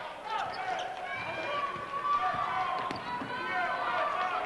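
A basketball being dribbled on a hardwood gym floor, with short high squeaks and the voices of the crowd.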